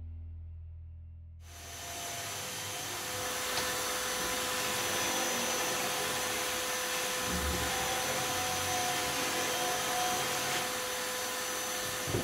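Music fades out, then about a second and a half in a corded electric roller sander starts abruptly and runs steadily against plywood, sanding cured epoxy off a scarf joint and the panel edges, its motor holding one steady whine under the sanding noise.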